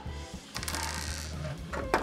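Plastic building-brick model sections rattling and clicking as they are handled and turned over, a brief run of fine clatter about half a second in. Soft background music plays underneath.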